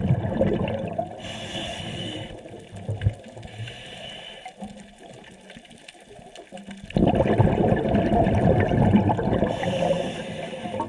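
Scuba diver's open-circuit regulator underwater: two short hisses of inhaled air in the first few seconds, then a loud rush of exhaled bubbles from about seven seconds in. A brief low falling burble comes at the very start.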